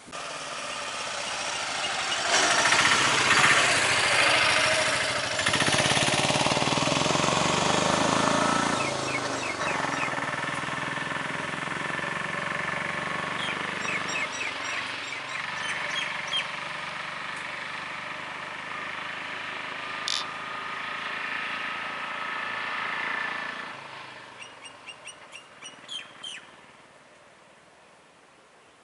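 A bus's diesel engine running close by, loudest in the first several seconds, then slowly fading and dying away about three-quarters of the way through as the bus moves off. Birds chirp in short calls over it and after it.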